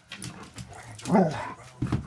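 A puppy and an old Labrador play-fighting: one short dog yelp that rises and falls about a second in, with scuffling and a thump near the end.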